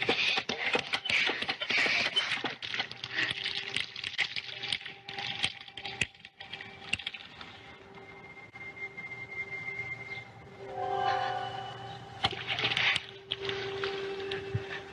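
Film soundtrack of a cast-iron hand water pump being worked: water gushing and splashing with clattering knocks from the pump for the first few seconds. A sustained chord of film music then comes in and swells near the end.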